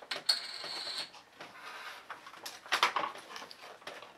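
Handling noises from toys and packaging being moved about: a stretch of rustling near the start, scattered light clicks and knocks, and a louder rustle near three seconds.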